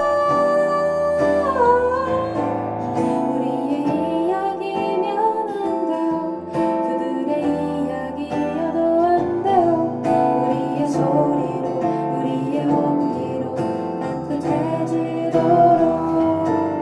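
Live acoustic song: an acoustic guitar strummed steadily under a sung melody.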